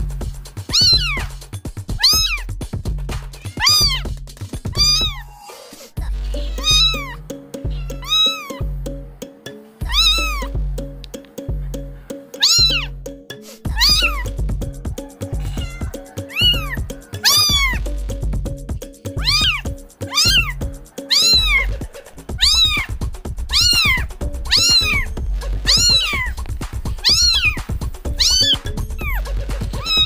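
Kitten meows, each rising then falling in pitch, repeated in a steady rhythm about once a second over a backing music track with a low beat.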